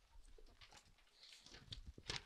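Near silence with faint soft rustles and light taps: the pages of a book being turned at a lectern.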